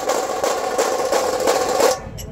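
Tasha drums of a dhol-tasha troupe playing a fast, continuous roll of stick strokes, bright with little bass, which cuts off abruptly near the end.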